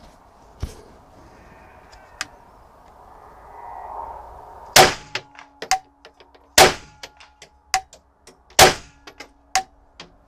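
Three rifle shots from a .22 rimfire mini-rifle, fired about two seconds apart starting about five seconds in, each a sharp crack followed by smaller clicks and echoes, with a faint ringing tone between them.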